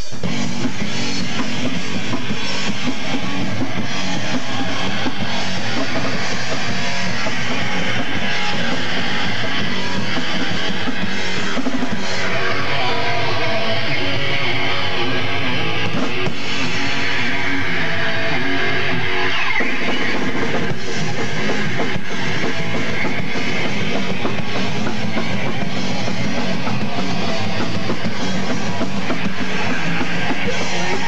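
A punk band playing a song live and loud on electric guitar, bass and drum kit.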